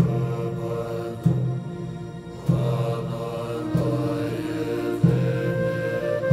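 Background music built on a low chanted mantra, a new phrase starting about every second and a quarter over sustained tones.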